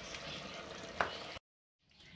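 Faint hiss of dal simmering in a clay handi just taken off the flame, with one light tap about a second in; the sound cuts off suddenly.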